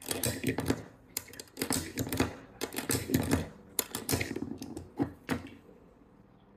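Cartridges being pressed one after another into a Glock pistol magazine: a run of sharp clicks and scrapes of brass against the magazine lips and spring-loaded follower, in uneven clusters, stopping shortly before the end.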